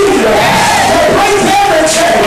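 Church congregation and preacher shouting and calling out together: loud, overlapping voices with no pause.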